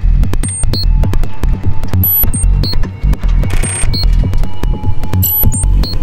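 Electronic music with a deep, pulsing bass beat a little under once a second, laced with sharp clicks and short high blips.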